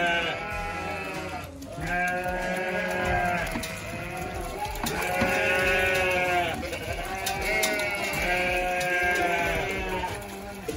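Sheep bleating over and over, long wavering calls that overlap one another, with a brief lull about a second and a half in.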